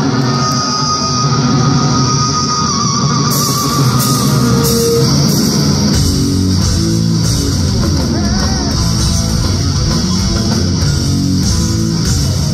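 Live heavy rock band playing through a loud PA, with electric guitar and bass. A single long held note, wavering near its end, opens the passage, and the full band with drums comes in about six seconds in.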